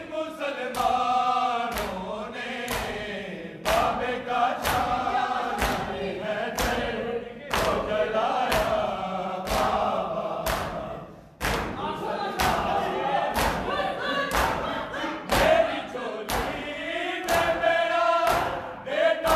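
A chorus of men chanting a noha lament in unison during matam. Many hands slap bare chests together in time, about once a second, over the singing.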